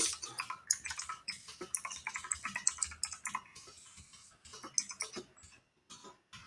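Computer keyboard typing: a fast run of keystroke clicks that thins out and gets quieter after about three and a half seconds.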